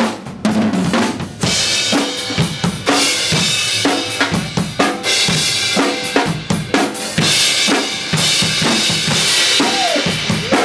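Drum kit, a Tama kit with crash and ride cymbals, played continuously: a steady beat of bass drum and snare strikes. After a brief drop just after the start, a loud cymbal wash comes in about a second and a half in.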